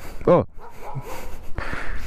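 A dog barks once, briefly, about a third of a second in, followed by a low rushing noise toward the end.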